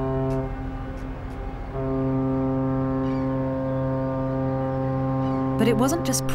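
A ship's horn blowing a deep, steady note with strong overtones. It breaks off about half a second in, then sounds a second long blast from just under two seconds in that holds to the end.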